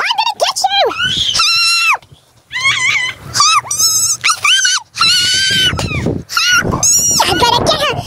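Young children's high-pitched squeals and whiny cries, a string of short wordless calls with brief gaps between them.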